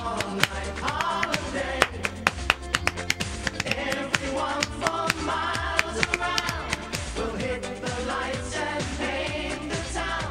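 Male singer performing an upbeat 1980s pop song into a handheld microphone, over a band backing with a steady drum beat.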